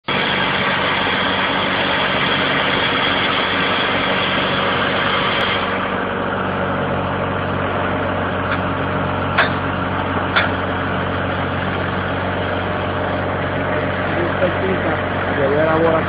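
Engine running steadily by a 1987 Sullivan MS2A3 air track drill, with a loud rushing noise over it that stops about six seconds in. Two sharp metallic knocks about a second apart come a little after the middle.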